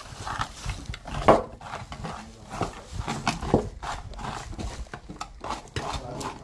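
Hand-cranked plastic rotary drum slicer being turned while small cucumbers are pressed into its hopper and cut: irregular knocks, clicks and crunches, the loudest about a second in.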